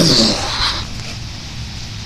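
A short click and a brief hissing scrape at the start, then a steady low rumble of wind on the phone's microphone.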